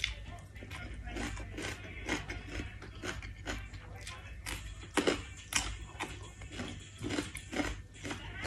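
Close-miked eating: rice noodles and cabbage slurped from chopsticks and chewed, with a run of irregular wet clicks and smacks, two louder ones about five seconds in. A steady low hum runs underneath.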